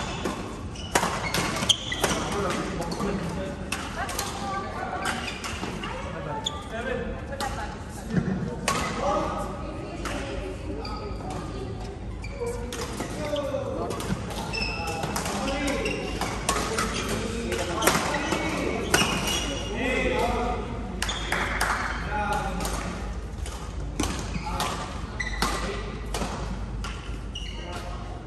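Badminton rally in a large indoor hall: repeated sharp cracks of rackets striking the shuttlecock, mixed with players' voices and calls.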